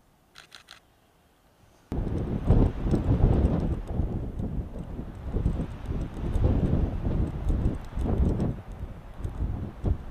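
Loud, gusty wind buffeting the microphone, starting suddenly about two seconds in and rising and falling in gusts.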